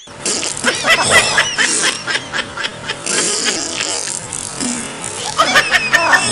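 Bursts of laughter over background music: a run of quick laughs in the first two seconds and another near the end.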